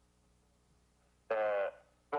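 A pause with only a faint steady hum, then a single short spoken syllable about a second and a half in.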